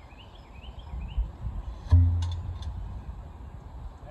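The sponge staff of a 4-pounder field gun worked in the bore, which wets the barrel to put out embers between shots. About two seconds in comes a hollow low boom that rings out briefly from the barrel, followed by a few light wooden knocks. Short rising bird chirps are faintly heard in the first second.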